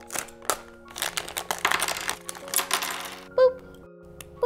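A thin plastic foil blind-bag packet being torn open and crinkled by hand: two sharp snaps near the start, then about two seconds of dense crinkling.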